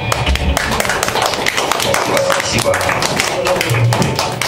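Audience clapping in a small club just after a live rock song stops, with voices talking and calling out over it.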